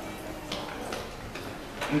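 A pause in a man's speech into a handheld microphone: a low steady background with about three soft clicks, and his voice resumes right at the end.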